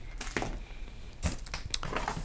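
Light rustling and a few soft knocks of packaged items being handled and shifted around inside a cardboard box.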